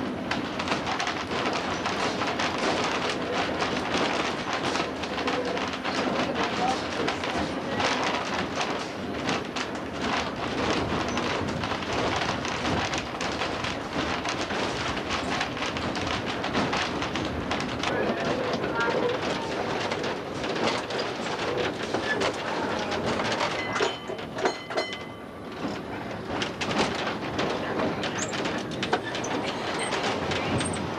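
Electric trolley car running along its track, heard from inside the car: a steady rattling rumble of wheels on rail, full of small clicks and knocks. About three-quarters of the way through it quiets briefly and a faint high whine shows.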